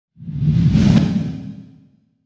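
Intro whoosh sound effect with a low rumble underneath. It swells over the first second and fades away by about two seconds.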